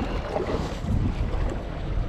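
Wind buffeting the microphone over sea waves washing against boulders, a steady rumbling hiss with no clear tones.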